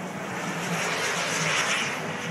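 Two radio-controlled model BAE Hawk jets flying past, their small turbine engines making a rushing noise that swells to a peak about a second and a half in and then eases off.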